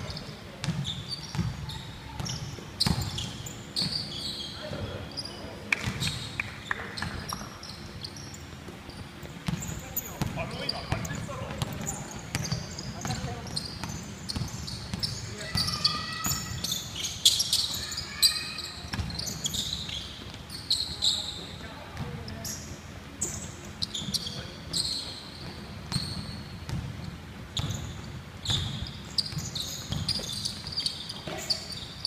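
A basketball being dribbled and bouncing on a hardwood gym floor, with thuds repeating irregularly through the play. Sneakers squeak in short bursts on the wood as players run and cut, thickest about halfway through.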